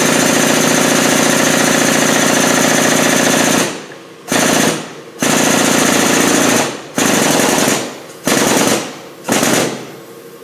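The powered pump of a hydraulic shop press runs with a fast, loud rattle, driving the ram down onto a tapered wrist pin bushing tool in a connecting rod's small end. It runs unbroken for nearly four seconds, then in five short spurts.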